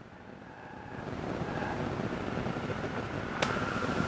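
Steady rushing outdoor background noise that builds over the first second and then holds, with one sharp click about three and a half seconds in.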